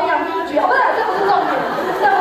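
Several people talking over one another in a large hall: indistinct chatter with no single clear voice.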